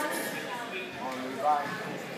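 Overlapping voices of people talking in a large hall, with one voice rising louder about one and a half seconds in.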